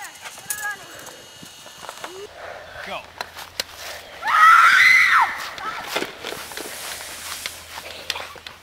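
A young person's drawn-out yell, about a second long, rising then falling in pitch, about four and a half seconds in. Faint scattered knocks and short faint vocal sounds come before it.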